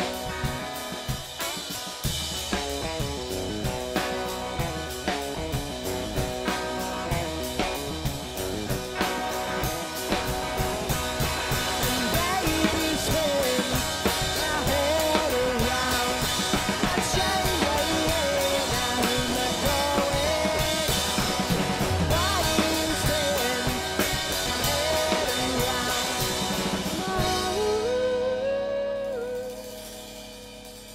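Live electric guitar and drum kit playing a rock song together, with a voice singing along the melody in the middle stretch. Near the end the drums drop out and the level falls, leaving mostly held guitar notes.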